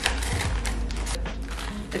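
Packaging rustling and crinkling in quick, irregular crackles as a small parcel is opened by hand, over background music.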